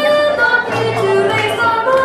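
A chorus of children singing a show tune together over a musical accompaniment, with held notes and a steady bass line.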